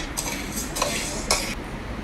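Metal spoon stirring dry uncooked basmati rice in a metal pot: the grains rustle and the spoon scrapes the pot in a few short bursts, with a click right at the start.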